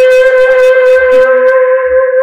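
A long white pipe blown as a horn close to a microphone, holding one long, loud, steady note rich in overtones.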